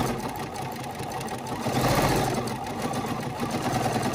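Bernina 505 QE sewing machine stitching continuously while free-motion quilting, with its BSR stitch-regulator foot fitted: a rapid, even run of needle strokes, a little louder about halfway through.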